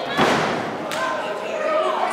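One loud thud of an impact in a kickboxing ring, with a short echo, followed just under a second later by a sharp click, over shouting voices.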